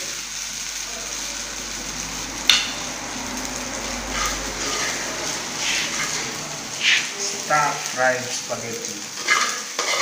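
Hot stir-fried spaghetti sizzling in a stainless steel pan as metal tongs lift it out and scrape and clink against the pan. There is one sharp metal clink about two and a half seconds in.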